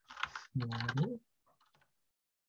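Computer keyboard typing: a quick run of keystrokes, then a few more faint keys near the end, as a code keyword is typed. A short voiced hum from the typist sounds in the middle.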